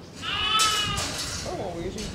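An Angora goat bleating once, a single high call of nearly a second that starts a moment in.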